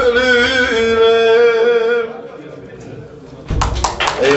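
A man singing a Turkish folk song (türkü), bending into a long held note that ends about two seconds in. A sudden loud burst of noise breaks in near the end.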